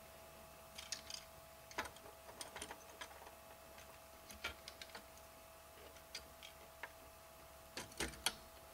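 Faint, irregular small clicks and taps from an Intel stock CPU cooler with push-pin mounts being handled and set onto the processor socket. A faint steady tone runs underneath.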